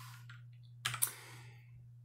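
A computer keyboard key pressed and released, two quick clicks close together about a second in, advancing a presentation slide. A low steady hum runs underneath.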